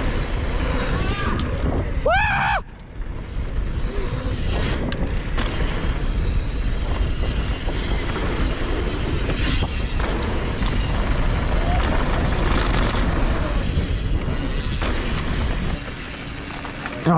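Mountain bike descent heard through a helmet-mounted action camera's microphone: steady wind rush and tyre noise on a dirt trail, with knocks and rattles from bumps and landings. A brief shout about two seconds in, and the noise eases near the end as the bike slows.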